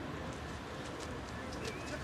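A pigeon cooing and short bird chirps over faint background voices, with no train yet loud in the mix.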